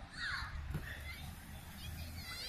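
A single faint bird call, about half a second long and falling in pitch, heard shortly after the start.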